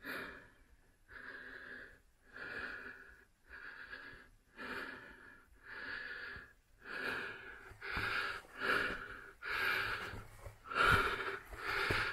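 A man's heavy breathing, in and out about once a second, coming quicker and louder in the second half: exertion from crawling on his knees through a low, cramped tunnel.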